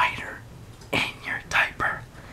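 A person whispering a few words: a breathy syllable at the start, then a quick run of four short syllables about a second later.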